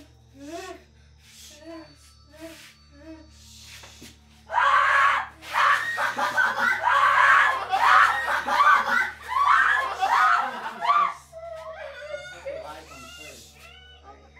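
Short, muffled whimpering cries come about once a second. About four and a half seconds in, a person breaks into loud screaming that lasts some six seconds, and quieter voices follow.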